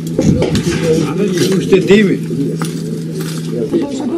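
Sharp clinks and rattles of hard debris, with people talking in the background and a low steady hum that stops near the end.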